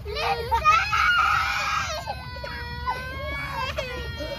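A young girl crying: a loud, harsh wail about a second in, then a long, drawn-out cry.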